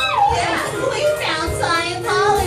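Stage cast singing a musical-theatre number, several voices gliding between notes, with one held note wavering near the end.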